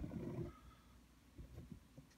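Faint low rumbling and soft bumps from a handheld camera being moved. The louder rumble comes in the first half second, then a few scattered light knocks.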